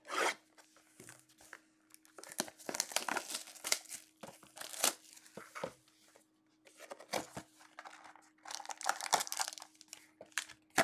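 Plastic shrink-wrap being torn off a Panini Limited football card box and crumpled in the hands: a run of crackling rips and rustles, with a quieter stretch around six seconds in.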